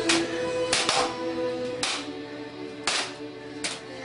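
Music with held notes, broken by about five sharp crashes roughly a second apart: toy lightsabers clashing.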